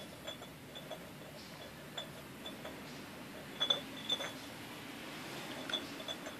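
A clear jar lying on its side clinks and knocks against concrete as a cat noses and paws at it to get a treat out. The knocks are short and scattered, with the loudest few about three and a half to four seconds in.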